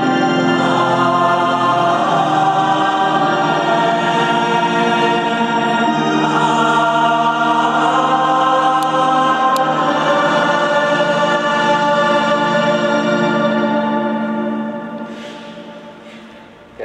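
Choir singing sacred music in long, sustained notes during a Catholic Mass; the singing dies away about fifteen seconds in.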